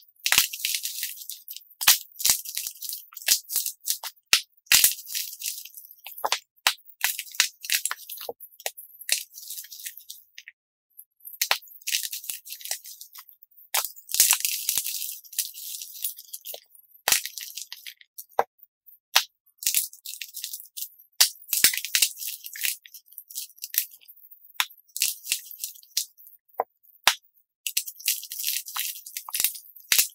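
Dyed chalk cubes crushed and crumbled between the fingers, played back sped up: rapid, crisp crunches and crackles in irregular bursts with short pauses.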